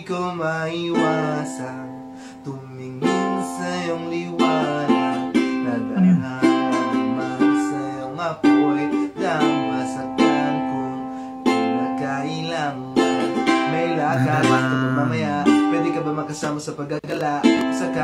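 A ukulele strummed in a steady rhythm with a man singing over it: an acoustic ukulele cover song.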